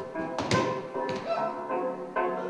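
A performer's body landing on the stage floor with one sharp thud about half a second in, over music with repeated pitched notes.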